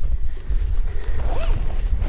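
A zip on a motorhome awning's fabric door being pulled, over a steady low rumble on the microphone.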